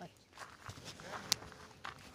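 Footsteps walking along a path through scrub, with irregular clicks and rustles; one sharp click comes just past the middle.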